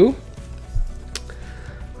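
A Pokémon trading card being handled and slipped into a clear plastic card sleeve: light plastic rustling and one short click a little past a second in, over faint background music.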